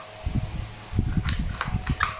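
Cardboard AR-15 replica being handled close to the microphone: low, uneven rubbing and knocking, with three light clicks in the second half.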